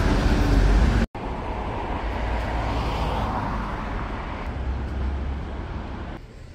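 Road traffic noise from a street: a steady rumble of passing cars that swells around three seconds in. A loud low rumble stops abruptly about a second in, where the footage cuts.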